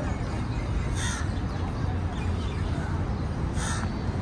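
Two short, harsh bird calls, one about a second in and one near the end, over a steady low rumble.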